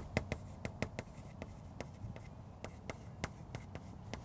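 Chalk writing on a blackboard: an irregular run of sharp taps and scratches as each letter is stroked out.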